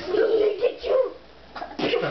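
A young child's high-pitched vocal sounds: a run of short squealing cries in the first second, then a brief sharp cry near the end.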